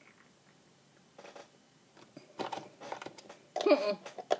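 A woman drinking a mouthful of coconut water, quiet at first, then short mouth and throat noises from about two and a half seconds in, and a pitched, wavering vocal groan near the end: a reaction of disgust at the taste.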